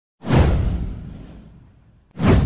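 A whoosh sound effect from an animated channel intro, with a deep boom beneath it: it hits suddenly a moment in, sweeps downward in pitch, and fades away over about a second and a half.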